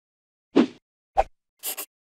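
Sound effects for an animated logo intro: a single plop about half a second in, a sharp click just after a second, then a quick double scratch near the end, like a marker stroke ticking a box.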